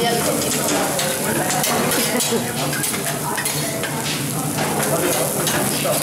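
Food sizzling on a teppanyaki steel griddle while metal spatulas repeatedly scrape, tap and chop against the hot plate, over a steady hiss.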